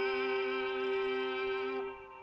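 Medieval music played by an early-music ensemble: a sustained chord of several held notes that dies away near the end, closing the piece.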